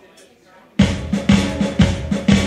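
A live rock band of drum kit, electric bass and electric guitar starts playing abruptly just under a second in, loud, with a strong drum beat about twice a second. Before that there is only faint room sound.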